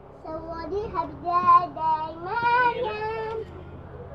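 A high, child-like voice singing a short tune of several held, wavering notes, which stops about three and a half seconds in.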